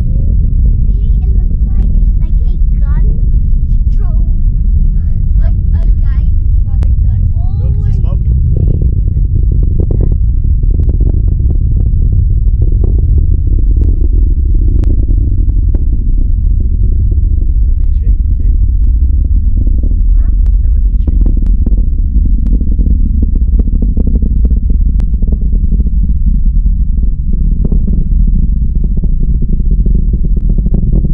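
Distant roar of a SpaceX Falcon 9's first-stage Merlin engines during ascent, arriving kilometres away as a loud, steady low rumble.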